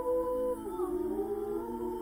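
Women's choir singing a cappella, holding a sustained chord. About half a second in, the voices slide down together into a new chord.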